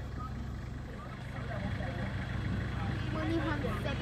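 Steady low hum of a vehicle's running engine, with faint voices of several people talking that grow a little louder in the second half.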